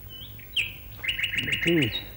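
A bird calling: two short high chirps, then a quick run of about seven repeated notes, some eight a second. A man's voice sounds briefly beneath the end of the run.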